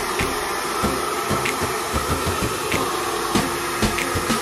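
Hand-held hair dryer running at a steady speed, a constant motor-and-fan whine over the rush of air, with an uneven low flutter as the airflow is moved through hair being brushed straight.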